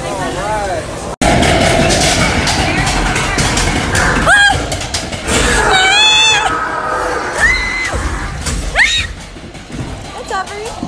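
Loud amusement-park dark-ride noise and music that cut in suddenly about a second in, broken by several shrill screams that sweep sharply up in pitch.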